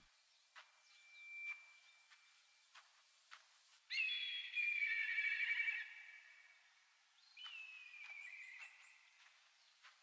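Faint, thin-sounding audio from the anime episode playing, with no low end: a high wavering call about four seconds in lasting about two seconds, and a shorter, gliding one near eight seconds.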